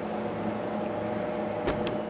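Steady room hum with a faint fixed tone, no speech; two short clicks near the end.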